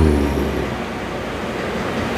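Steady, even background noise with no clear events, opening with a short hummed 'mmm'.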